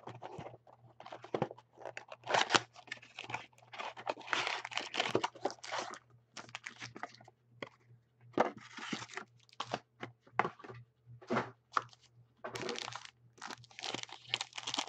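Trading-card boxes and packs being handled and opened by hand: irregular bursts of tearing, crinkling and rustling of cardboard and wrapper, with short pauses between.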